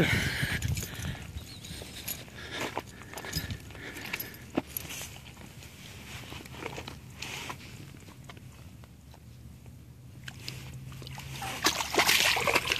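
Faint, intermittent water sloshing and dripping as a largemouth bass is held by the lip at the surface and eased into the water for release, with scattered small clicks and rustles of handling.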